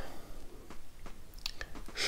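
Faint mouth sounds of tasting a sip of whisky: a short breathy sip right at the start, then a few sharp wet lip and tongue smacks.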